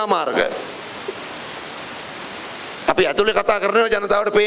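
A man speaking into a microphone in Sinhala, who stops for about two and a half seconds, leaving only a steady hiss, then speaks again.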